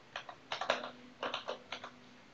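Typing on a computer keyboard: three quick runs of key clicks with short pauses between them.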